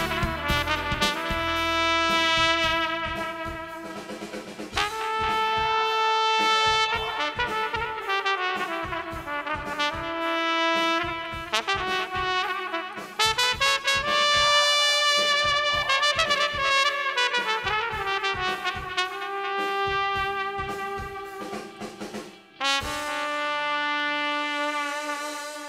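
Trumpet solo in a Balkan brass style, long held notes alternating with quick runs, with a short break near the end before a final held note.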